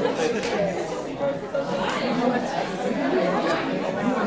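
Audience chatter: many voices talking over one another at once, with no single voice standing out.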